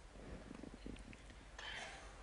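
A quiet pause in a man's speech: faint room tone and low rumble, with a soft intake of breath near the end.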